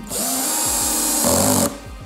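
LUX-TOOLS cordless drill-driver driving a wood screw into a pine board, its motor running steadily for about a second and a half. Near the end the sound changes as the screw seats and the low-set torque clutch slips, stopping the screw, and then it cuts off.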